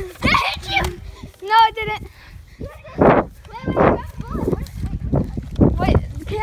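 Children's high-pitched calls and shouts without clear words. They come about a second and a half in, again near four seconds, and briefly near the end, among rustling, knocking and footstep noise from a handheld phone being carried across grass.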